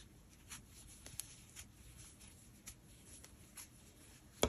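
Near silence with a few faint, scattered ticks and rustles from hands working a crochet hook through bulky cotton yarn.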